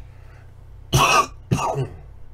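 A man coughing twice in quick succession into his fist, two short, loud coughs about half a second apart.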